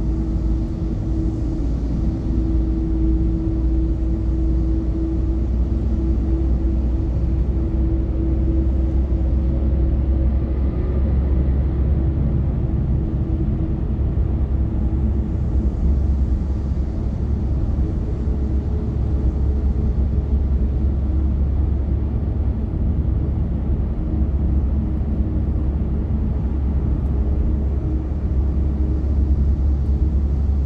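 Steady road and engine drone inside a car cabin cruising at expressway speed: a deep low rumble with a faint steady hum above it.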